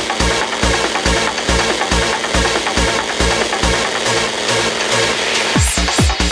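Hard trance electronic music: a steady four-on-the-floor kick drum, about two beats a second, under dense synth layers. Near the end a rising noise sweep leads into a harder kick that falls in pitch on each beat.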